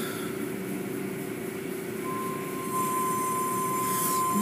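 Automatic tunnel car wash running: a steady mechanical hum under an even hiss of spray and washing. A thin, steady high tone joins about halfway through.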